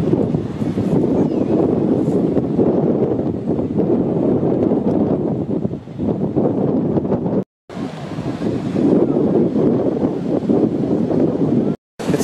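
Strong sea wind buffeting the camera microphone: a loud, uneven low rumble that swells and falls with the gusts, with a short break about seven and a half seconds in.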